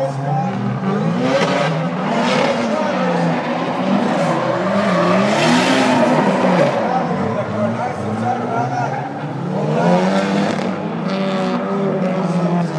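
Gymkhana car's engine revving up and down again and again as it is driven hard, heard from across the track. Its tyres squeal and skid, loudest about five to seven seconds in.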